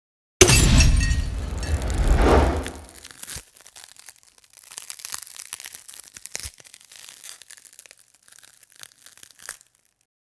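Logo-intro sound effect: a sudden loud crash about half a second in that fades away over the next few seconds, followed by faint scattered crackles that stop shortly before the end.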